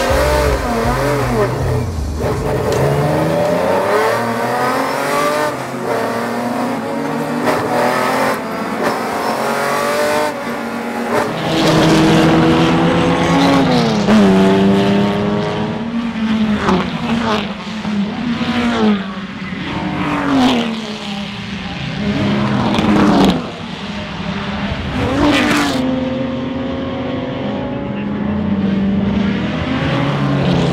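Historic 1950s sports-racing car engines at racing speed. In the first part the engines climb in pitch again and again, revving up through the gears. Later several cars pass one after another, each rising and then dropping in pitch as it goes by.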